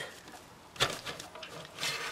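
A single sharp click, then a short scrape near the end, as a hard drive is worked loose and starts sliding out of its bay in an external drive enclosure.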